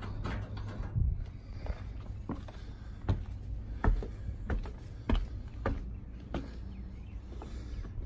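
Footsteps on wooden deck steps and decking at an even walking pace, a knock every half second or so, over a steady low rumble.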